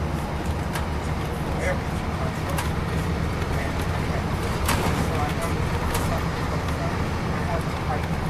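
Cabin sound of a 2002 MCI D4000 coach under way: the Detroit Diesel Series 60 engine's steady low drone under road and tyre noise, with a few sharp clicks from the bodywork.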